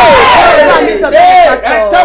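A man's voice shouting loud, drawn-out cries in fervent prayer, the pitch sliding up and falling away.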